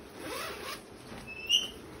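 A zipper pulled open on a shiny nylon puffer jacket: a short rasping run about half a second long, followed by a brief sharp sound about a second later.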